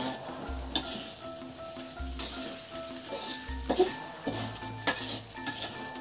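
Food frying in a wok and being stirred with a spatula, scraping, with a few sharp knocks of the spatula against the pan.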